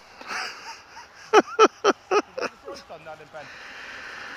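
A man laughing: a quick run of about five short 'ha' bursts about a second in, tailing off into a few fainter ones.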